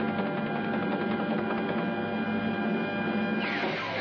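Cartoon sound effect of a military aircraft's engines, a steady drone. About three and a half seconds in, a falling whistle and a short burst of noise cut across it.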